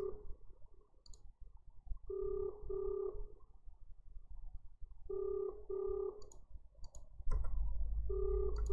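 Australian telephone ringback tone: a low double beep repeating about every three seconds, heard twice in full, the number being called ringing at the other end without being answered yet. A click and a low rumble come in near the end.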